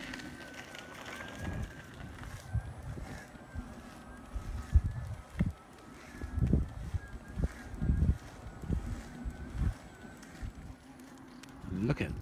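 Wind and rumble on the microphone of someone riding an electric unicycle over a bumpy track, with irregular low thumps and a faint wavering whine through much of it.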